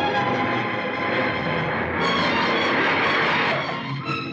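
Film background score of sustained organ-like chords over the sound of a taxi driving on a dirt road, with a louder noisy rush in the second half.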